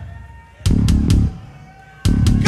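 Technical death metal band playing live on distorted guitars, bass and drum kit in a stop-start break. The music drops out, a short unison hit with cymbal strikes comes about half a second in, then it stops again, with faint guitar ringing in the gaps.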